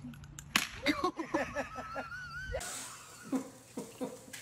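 A single sharp smack about half a second in, followed by a cry whose pitch slides up and down. It breaks off abruptly partway through into quieter room sound with a few brief voice sounds.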